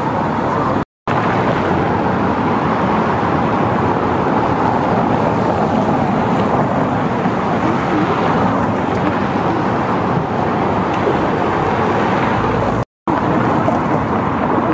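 Busy city-avenue traffic: cars driving along cobblestone paving, a steady dense noise of engines and tyres. It drops out to silence twice for an instant, about a second in and again near the end.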